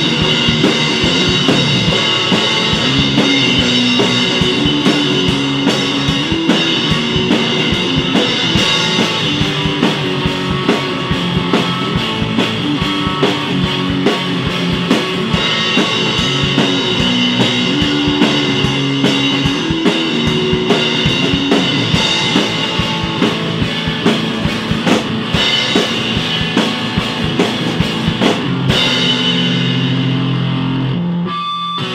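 A rock band playing an instrumental passage with no singing: a full drum kit keeping a busy beat, a bass guitar line moving up and down in steps, and guitar.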